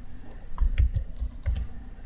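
Computer keyboard being typed: several short key clicks in quick succession as a formula is keyed in.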